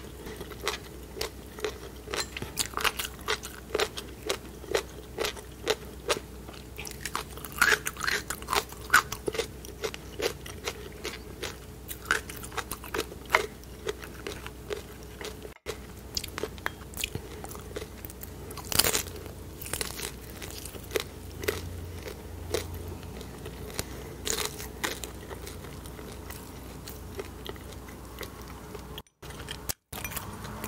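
Close-miked chewing and crunching of food, a dense run of sharp crunches and mouth clicks that comes in clusters and thins out toward the end.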